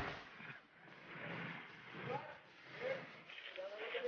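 A person's faint voice in a few short groaning sounds that bend up and down in pitch.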